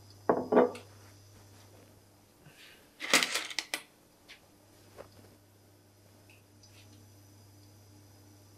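Kitchen clatter: a couple of brief knocks just after the start, then a short burst of sharp clinks and knocks about three seconds in as things are set down and handled on the hob and worktop. A faint low steady hum runs underneath.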